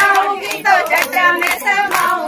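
Women singing a Pahari folk song, with steady hand-clapping keeping the beat about twice a second.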